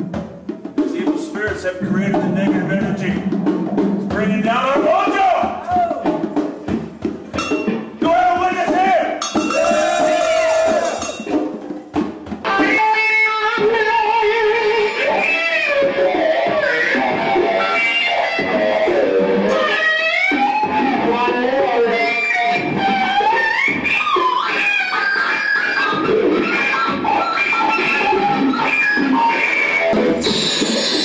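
Experimental electric guitar music, the notes gliding and bending up and down as played with a slide.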